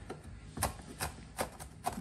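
Chef's knife chopping pimento peppers on a wooden cutting board: four main sharp knocks of the blade on the board, about one every half second.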